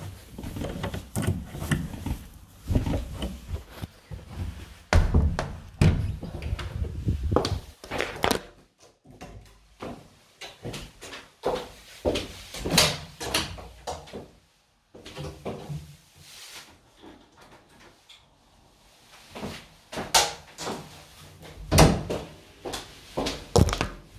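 Irregular knocks, thuds and rubbing from a phone being handled and covered close to the microphone, with a door being worked at its handle and shut.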